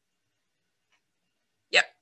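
Dead silence for about a second and a half, then one short spoken syllable near the end.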